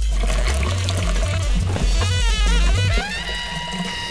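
Film score with a bass line playing distinct notes, joined by a watery gurgling and pouring sound effect in the middle. Near the end the bass stops and held high tones take over.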